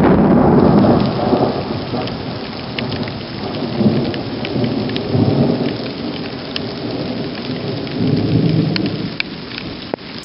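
Long rolling thunder rumble from a nearby storm, loudest in the first second or so and swelling again several times. Rain hisses underneath, with scattered sharp ticks of drops.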